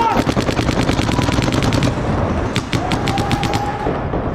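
Paintball markers firing in rapid streams: a fast run of shots for about two seconds, then a shorter burst near the three-second mark.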